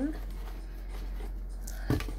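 A deck of tarot cards being picked up and handled on a table, a soft scraping rustle, with one sharp knock near the end.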